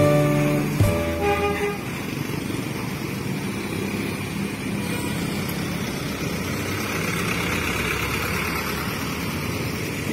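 Street traffic at an intersection: steady engine and tyre noise from passing cars, motorbikes and a bus pulling away. It follows a short run of musical notes that step in pitch and stop about two seconds in.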